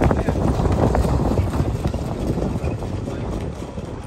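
Hoofbeats of two harness horses pulling sulkies on a sand track, a quick clatter that grows fainter through the second half.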